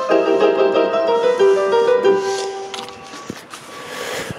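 A short melody played by hand on a Roland Sound Canvas multitimbral electronic keyboard set to a piano-like voice. The notes stop nearly three seconds in, followed by a few faint clicks.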